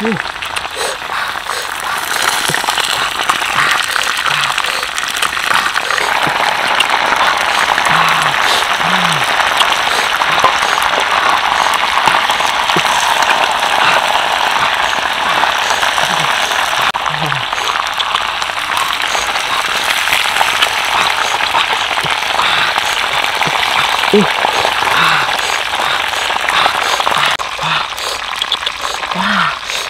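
A loud, steady, dense crackling hiss, like sizzling or rain, with a few short low voice-like grunts scattered through it.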